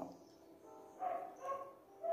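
Dogs barking faintly in the background, with two short calls about a second in.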